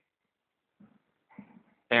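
Near silence in a small room, with a few faint soft rustles, then a man's voice starting to speak near the end.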